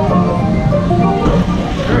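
Music, with held melody notes over a steady low accompaniment, playing from the log-flume ride's own speakers.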